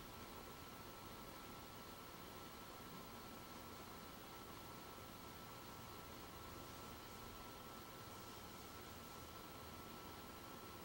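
Near silence: room tone, a faint steady hiss with a thin steady high whine.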